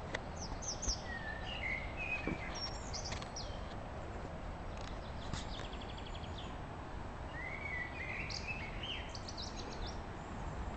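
Songbirds singing in trees: a bout of chirping, gliding phrases at the start, a fast trill in the middle and another bout of song near the end, over a steady low background rumble.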